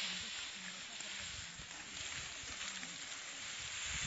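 Dry harvested rice stalks rustling as they are gathered and bundled by hand, with faint distant voices.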